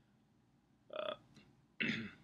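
A man's short hesitant 'uh', then a throat clearing that starts near the end, louder than the 'uh'; quiet room tone between.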